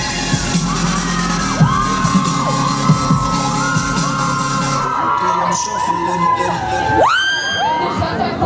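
Live pop band playing on an outdoor stage, heard from among the audience, with fans screaming and cheering over the music. The beat thins out about five seconds in, and a long high scream rises near the end.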